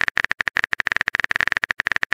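Keyboard typing sound effect for a phone text message: a fast, uneven run of sharp, identical clicks.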